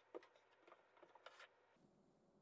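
Near silence, with a few faint light clicks and taps of wooden parts being handled.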